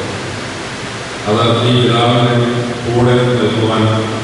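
A man's voice through a microphone and loudspeaker, in long, drawn-out, intoned phrases, resuming after a short pause about a second in.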